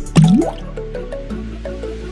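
A single short water-drop 'bloop' that rises quickly in pitch, as the toy clownfish goes into the water, over background music with a steady beat.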